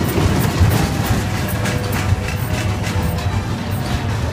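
Fairground music playing over the running noise of a small children's roller coaster, its train rumbling and clicking along the track.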